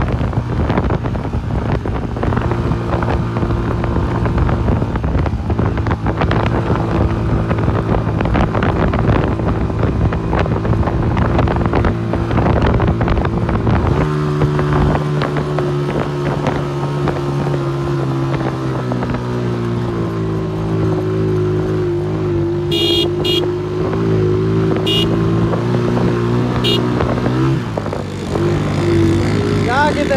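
Honda motorcycle's single-cylinder engine running at a steady speed on a sandy track, heard from the rider's seat, with wind buffeting the microphone through the first half. About halfway the engine note changes abruptly to a cleaner, slightly different pitch.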